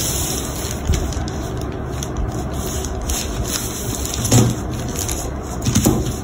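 Steady background noise like distant traffic, with light scrapes and taps of a metal ruler and a marker on paper pattern sheets.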